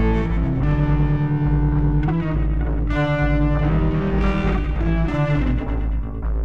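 Electric guitar, a Stratocaster-style solid body, playing slow blues: sustained single notes in short phrases, with a higher phrase about halfway through. A steady deep bass runs underneath.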